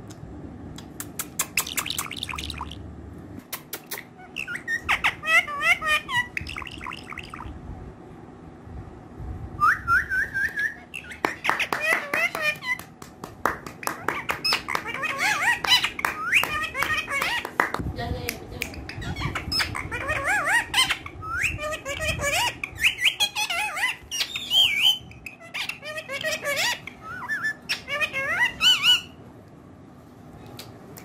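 Indian ringneck parakeet chattering and squawking in repeated bursts, with sharp clicks among the calls and short pauses between groups.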